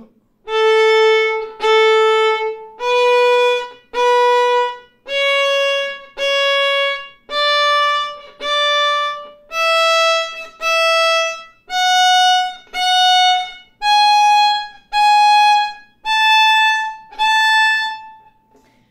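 Solo violin playing a one-octave A major scale upward, from the open A string to the A on the E string. Each note is bowed twice as a separate stroke of about a second, with a short break between strokes, so the pitch climbs in even pairs.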